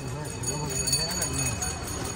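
Quiet, indistinct talking close by, with light knocks and rustles of books and packages being handled.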